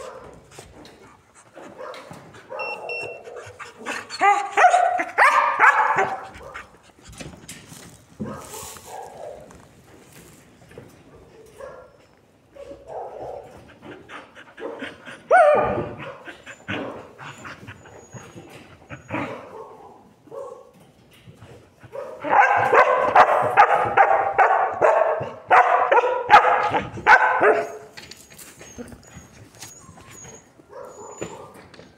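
A dog whining and yipping in bursts. There is a loud run a few seconds in, a short falling yelp midway, and a longer stretch of rapid whines and yips near the end.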